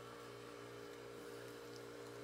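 Faint steady electrical hum over quiet room tone, with no other sound.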